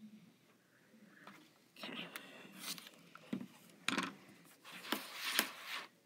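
A rotary cutter's round blade scraping through fabric against an acrylic ruler on a cutting mat, with several sharp clicks as the cutter and ruler are handled.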